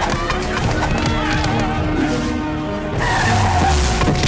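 Action film background score, with a car's tyres skidding to a stop near the end.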